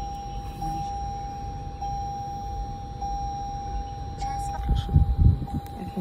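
A steady electronic tone that swells and fades about every second and a bit, with a few loud low bumps of handling near the end.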